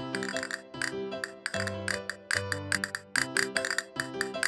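Music with a steady bass line and quick, sharp castanet clicks in a fast rhythm, played on castanets mounted on a wooden block.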